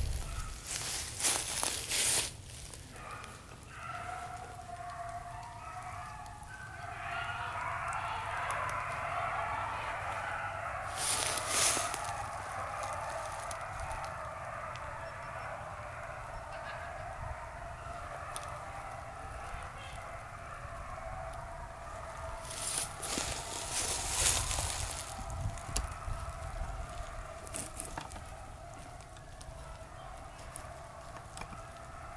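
A pack of beagles baying together in full cry as they run a rabbit in sight. The chorus builds about three seconds in and carries on steadily. Loud bursts of rustling close to the microphone come near the start, about eleven seconds in, and again about twenty-three seconds in.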